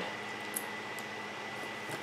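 Electric fan running on its low setting: a steady, quiet whoosh, with one faint tick about half a second in.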